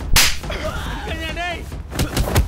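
Film fight sound effect: a sharp, swishing punch hit just after the start, then about a second in a short, wavering cry from a voice.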